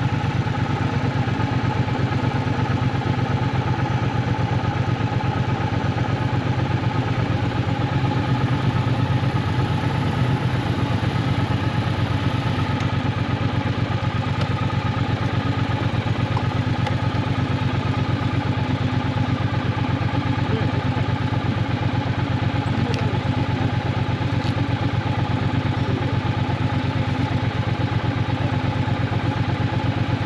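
Triumph Bonneville T120's parallel-twin engine running steadily at an even pitch, with no revving or gear changes.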